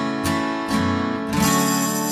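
Music: acoustic guitar strumming chords in a steady rhythm, then a last chord about one and a half seconds in that is left to ring and slowly fade.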